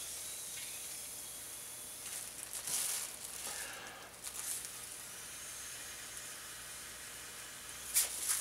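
Breath blown hard into a plastic grocery bag inside an empty wine bottle's neck, a steady hiss of air with a few stronger puffs about a third of the way and about halfway through, inflating the bag.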